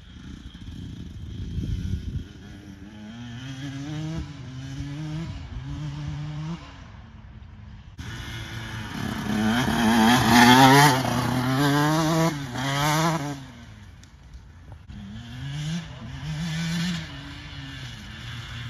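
2022 KTM 150 SX two-stroke dirt bike accelerating through the gears, its pitch climbing and dropping back with each shift again and again. It is loudest midway as it rides close by, then fades as it pulls away and climbs once more near the end.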